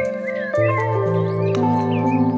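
Slow ambient meditation music of held, organ-like synth chords, changing about half a second in and again near the end, over birdsong with short curving chirps.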